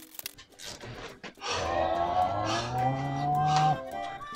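A man's long, drawn-out groan, low and rising slightly in pitch, lasting about two seconds from a second and a half in; a few light tool clicks come before it.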